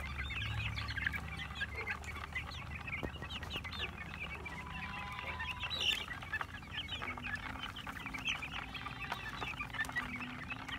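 A flock of young gamefowl chickens peeping and chirping all together, many short high calls overlapping without a break as the birds crowd in to peck at the ground.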